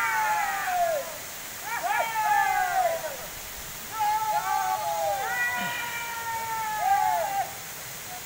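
Men's voices giving about four long, high held calls, one after another and sometimes overlapping, each sliding down in pitch at its end, over the steady rush of a waterfall.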